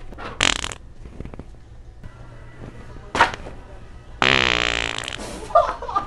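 Fake wet fart noises from a handheld Sharter fart toy, used as a prank: a short burst near the start, a brief one about three seconds in, then a long raspy one about a second long that falls in pitch, ending in small sputters.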